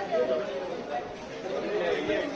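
Chatter of several people's voices talking over one another in a crowd.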